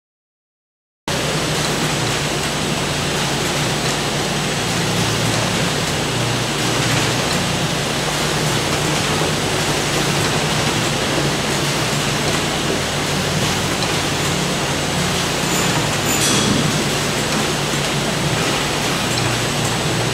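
Steady machinery noise of a running packaging line and its plastic modular-belt conveyor, an even hiss with a low hum, starting abruptly about a second in. A brief click sounds near the end.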